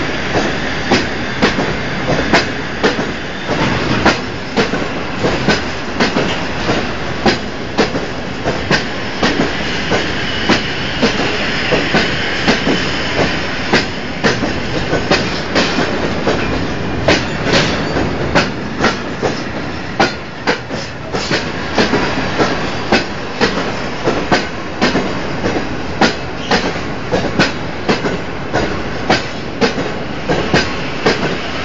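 Freight train of tank wagons passing close by, the wheels clicking over rail joints in a steady clickety-clack, about two clicks a second over a continuous rolling rumble.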